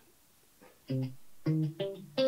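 Clean electric guitar playing single picked notes of a C minor riff: three separate notes, the first about a second in, each starting sharply and dying away.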